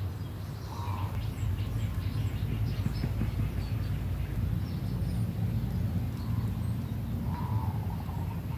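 Outdoor garden ambience: a steady low rumble with a few faint bird chirps, and a soft call about a second in and again near the end.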